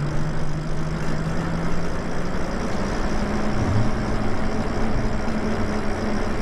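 Lyric Graffiti e-bike riding along: a steady motor hum that rises a little in pitch about halfway through, over wind and road noise.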